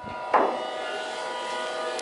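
Otis hydraulic elevator machinery starting up with a short knock about a third of a second in, then running with a steady, even hum made of several tones.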